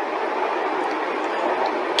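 Steady rushing background noise, fairly loud and unchanging, with no words over it.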